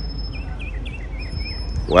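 Small birds chirping outdoors in many short, quick notes over a steady low rumble, with a thin high steady tone coming and going behind them.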